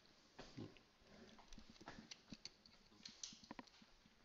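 Near silence: faint room tone with a scattering of light clicks and taps.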